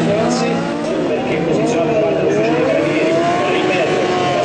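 Several superbike engines revving hard in burnouts, their pitch sweeping up and down in overlapping waves.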